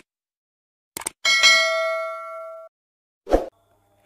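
Subscribe-button animation sound effects: two quick mouse clicks, then a bright notification-bell ding of several tones that fades over about a second and a half and cuts off. A brief noisy burst follows near the end.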